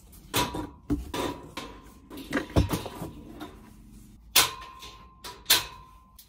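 Steel shelving unit with wooden shelf boards being taken apart: a string of sharp clanks and knocks as the boards are lifted out and the frame is handled, several followed by a short metallic ring.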